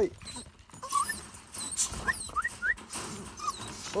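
Dogs whining in short, high, rising squeaks: one about a second in, three in quick succession about two seconds in, and another near the end.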